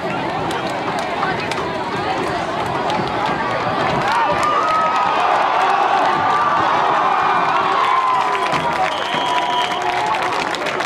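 Crowd of spectators at a high school football game shouting and cheering, with many voices overlapping. The cheering swells from about four seconds in as the ball carrier breaks into a run.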